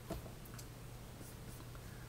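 Faint scratching and tapping of a stylus drawing strokes on a graphics tablet, with one light tap just after the start, over a low steady hum.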